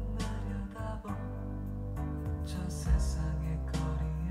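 Korean pop song playing from a vinyl LP on a turntable: an instrumental stretch with no singing, a guitar over sustained bass notes, and recurring high cymbal-like hits.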